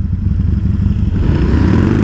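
Harley-Davidson V-twin motorcycle engine idling with a rapid low pulse, then pulling away from a stop, its engine speed rising from a little past halfway.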